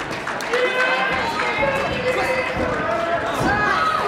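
Voices of a crowd in a large, echoing hall, with several dull thuds of bare feet landing on foam mats as a competitor spins and flips.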